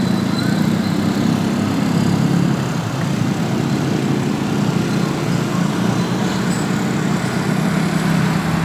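Steady low rumbling background noise with no distinct events, of the kind PANN files as vehicle or traffic noise.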